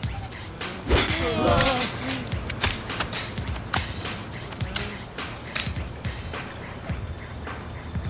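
A row of riders and their bicycles toppling over into a pile: a loud crash about a second in, with a wavering cry, then scattered knocks and clatter of bike frames and bodies settling. Music plays underneath.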